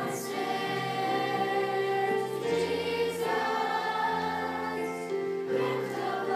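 A children's choir singing a slow song in long held notes, the chords changing a few seconds apart.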